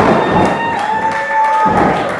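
A wrestler's body slamming onto the wrestling ring mat, with a second low thud near the end, while crowd voices rise in a loud, held shout.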